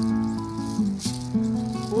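Classical guitar strumming chords that ring on, with a new chord struck about a second in.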